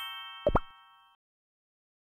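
Cartoon sound effects of an animated TV logo sting: a bright chime rings out and fades within about a second, with a quick rising pop about half a second in.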